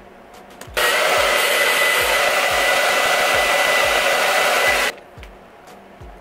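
A Conair handheld hair dryer is switched on about a second in and runs for about four seconds before cutting off: a loud, even rush of air with a thin steady whine. It is aimed at the front hairline of a lace front wig.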